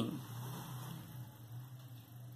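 A quiet pause: faint room tone with a steady low electrical hum.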